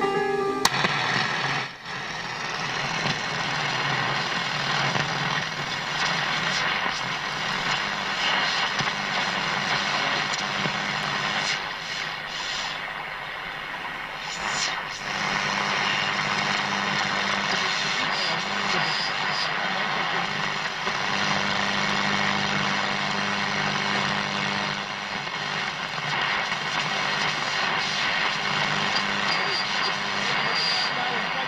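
Tandberg TP41 radio receiving a station through a heavy, steady hiss of static, with music faintly coming through. This is poor reception, which the owner suspects is interference from lights in the room.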